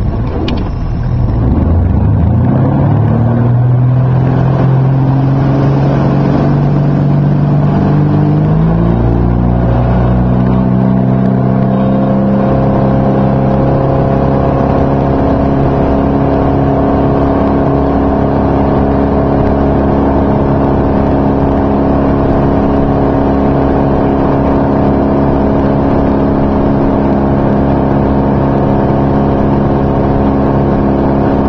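Tow boat's engine opening up from low speed: its pitch climbs over the first few seconds, climbs again about nine seconds in, then holds steady at the fast running speed needed to tow a barefoot skier.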